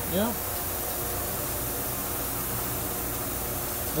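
Steady fan-like hum with an even hiss, unchanging throughout, after a brief spoken word at the start.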